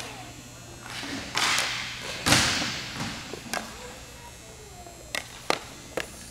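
Hockey play on a rink: a few sharp clacks of stick and puck, and bursts of scraping noise. The loudest is a sudden scrape about two seconds in that fades over a second.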